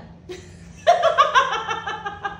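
Two women laughing together. The laughter breaks out suddenly about a second in, in quick repeated bursts.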